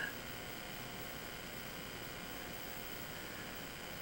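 Faint steady hiss with a few faint, steady high tones underneath; no distinct event.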